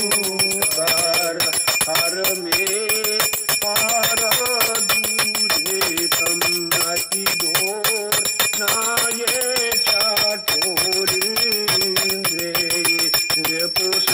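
Small brass hand bell rung rapidly and without pause, its clapper striking many times a second, over a voice singing a devotional hymn in a steady, wavering melody.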